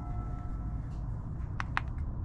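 Wind buffeting the microphone, a steady low rumble. There are two sharp clicks near the end as the cast iron Dutch oven lid is handled.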